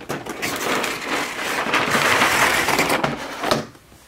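Cardboard box sleeve being opened and a display tray slid out of it: a continuous rustling scrape of cardboard with small knocks, stopping about half a second before the end.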